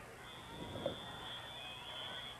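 Faint background noise in a pause of the play-by-play commentary, with a thin, steady high-pitched tone that starts just after the beginning and holds for about two seconds.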